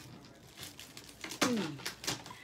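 A woman's short vocal groan that falls in pitch, about a second and a half in, over faint rustling as she reaches and searches.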